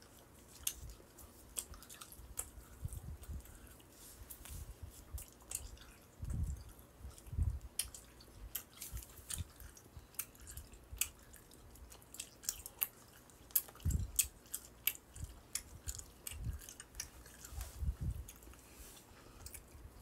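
A person chewing a fresh piece of gum close to the microphone: irregular wet smacking and clicking mouth sounds, with a few low thumps.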